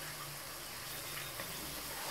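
Onions and ginger-garlic paste frying in ghee in a pan: a steady, soft sizzle, with a few faint ticks about halfway through.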